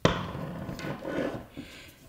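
A sharp knock, then the metal camera stage of a Steadicam Merlin 2 being worked off its arm with a rubbing scrape that fades out near the end.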